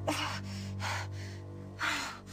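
A woman gasping for breath, three sharp, ragged breaths about a second apart, the first with a voiced catch, over a sustained low music chord.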